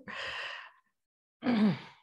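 A woman's breathy exhale, then about a second later a short voiced sigh that falls in pitch.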